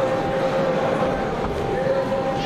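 Steady sports-hall background: spectators' chatter under a constant hum.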